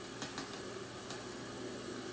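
A plastic stirrer mixing a beer-and-clamato drink in a tall glass, with a few faint light ticks against the glass over quiet steady background noise.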